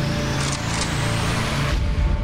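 Electronic intro sting: a rushing noise riser sweeps upward over a held musical drone, then cuts off suddenly near the end, just before a hit.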